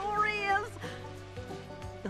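Background music from the cartoon soundtrack, with a short high call from a cartoon critter, about half a second long, right at the start.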